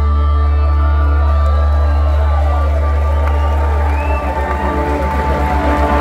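Live rock band with electric guitars and bass holding a final sustained, droning chord at a song's end, the deep low note starting to pulse rapidly about four seconds in. The crowd is cheering under the music.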